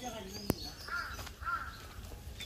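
A crow cawing twice, about a second in and again half a second later, preceded by a single sharp click.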